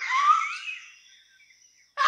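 A sound effect from the animation: a rising whistling tone with a hiss over it. It is loudest for the first half second, then fades away over about a second.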